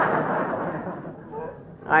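Studio audience laughing at a punchline on an old, narrow-band radio broadcast recording, the laughter dying away over about a second and a half. A man's voice comes in right at the end.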